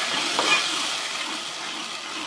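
Onion and green-chilli paste sizzling steadily as it fries in hot ghee, easing off a little toward the end.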